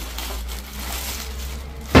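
A plastic poly mailer bag being torn open by hand and rustled: a steady crinkling, tearing noise.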